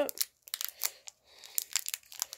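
Wrapper of a coconut candy roll crinkling in quick, irregular crackles as fingers pick and pull at it to open it; the candy is tightly wrapped.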